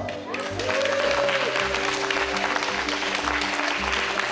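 Audience applauding, starting a moment in and running on steadily, with background music of sustained tones beneath it.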